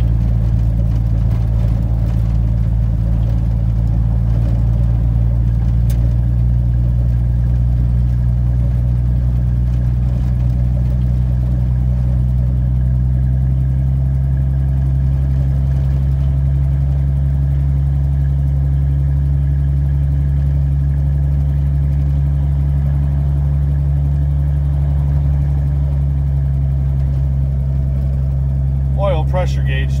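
1982 Ford F-150 engine running steadily under way at low speed, heard loud inside the cab, its exhaust broken just after the manifold. A steady low drone, its deepest note easing a little about halfway through.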